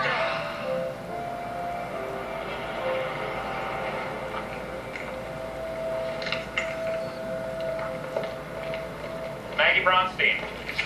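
Film soundtrack played through a television: held, sustained music notes that shift pitch now and then, with a few faint short sounds near the middle. A man's voice starts right at the end.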